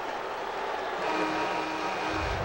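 Basketball arena crowd noise, with a steady horn-like chord of several held notes coming in about a second in.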